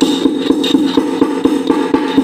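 Small metal pestle pounding whole black peppercorns in a small metal mortar: rapid, even strikes, each with a metallic ring.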